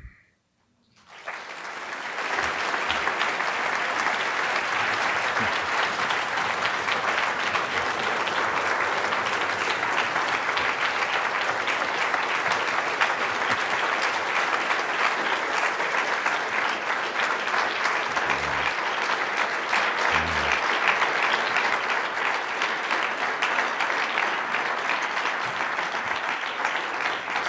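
Audience giving a standing ovation: dense, steady applause that starts about a second in, builds quickly and holds at full strength.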